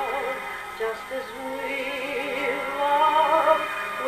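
A shellac 78 rpm record playing on an acoustic Victor talking machine: a woman singing with vibrato over an orchestra. The sound is thin, with almost no deep bass.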